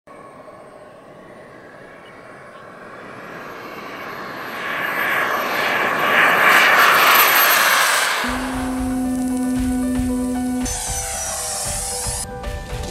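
The single model jet turbine of a Skymaster F-18C Hornet, running up with a thin high whine that climbs in pitch about three seconds in. A rush of jet noise swells to its loudest around six to seven seconds in, then fades. About eight seconds in, music with a low steady note and beat takes over.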